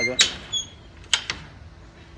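Sharp metal clicks of a trailer gate latch being worked: one loud click just after the start and two quicker ones a little past the middle.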